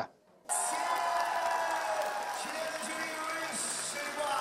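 Audience in a concert hall applauding and cheering, starting about half a second in, with a voice carrying over the crowd.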